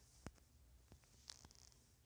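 Near silence, with about three faint taps of a finger on a phone touchscreen.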